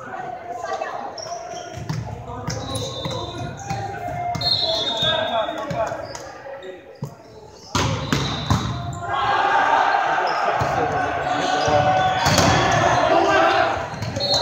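Volleyball rally in a large gym: a sharp slap of the ball being served about eight seconds in, then more hits, with players shouting and calling to each other, louder during the rally.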